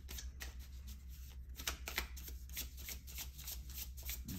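A deck of tarot cards being shuffled by hand: quick, irregular papery clicks and flicks of the cards, several a second, over a low steady hum.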